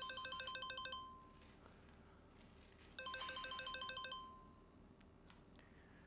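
Mobile phone ringing twice: a fast electronic trill of repeated beeps, each ring about a second long, the second starting about three seconds in.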